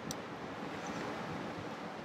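Steady faint hiss of room and microphone noise, with a faint brief tick just at the start.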